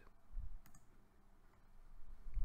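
A faint single computer mouse click about two-thirds of a second in, preceded by a soft low thump.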